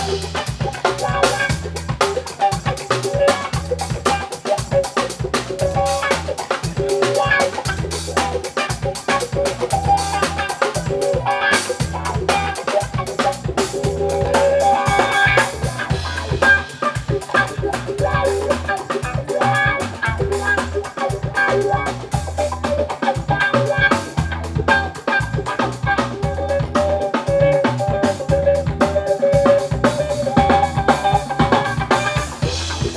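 Live jazz-funk band playing: a steady, busy drum-kit groove with a repeating electric upright bass line and electric guitar over it.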